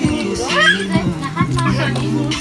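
Toddlers laughing and calling out as they play, over background music with steady held notes.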